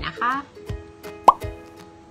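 Background music with steady notes, broken about a second in by a short, loud rising 'plop' sound effect. A woman's voice says a brief word at the very start.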